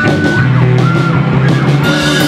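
Live rock band playing loudly, with electric guitars.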